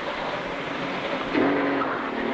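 A car's engine running as the car pulls out. About a second and a half in comes a brief steady-pitched sound lasting under a second.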